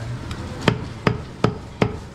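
A butcher's large knife chopping goat meat into pieces on a wooden chopping block: about five sharp knocks, a little under half a second apart.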